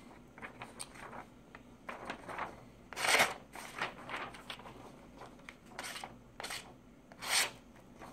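Freshly sharpened stiletto switchblade slicing through a hand-held sheet of paper: a series of short papery swishes and rustles, the loudest about three seconds in and another strong one near the end.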